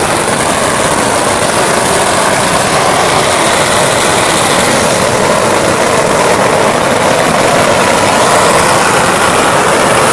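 A long string of firecrackers going off continuously in a dense, unbroken crackle, loud and steady throughout.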